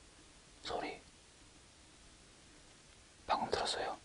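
A man whispering two short hushed phrases, one about half a second in and one near the end, over faint steady background hiss.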